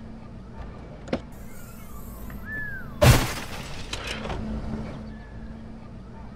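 An old plastic-cased computer monitor dropped onto pavement, landing with a loud crash about three seconds in, followed by a smaller knock about a second later.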